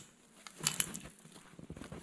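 Quiet handling noise: a few soft knocks and rustles as an axe is lifted up to a small felled tree, with light ticks near the end.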